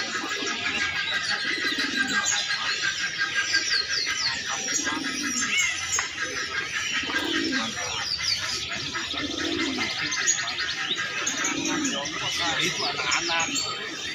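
Domestic pigeons cooing, a low coo every two seconds or so, over a steady chatter of many small birds chirping high.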